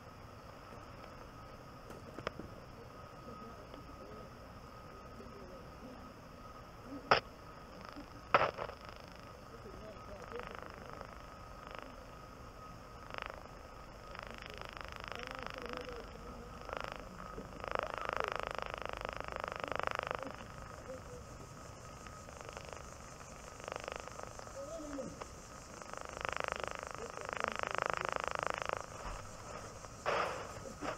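Ultrasonic leak detector probing an evaporator coil: a faint steady tone under a hiss that swells up several times, a few seconds each. Two sharp clicks come about seven and eight and a half seconds in.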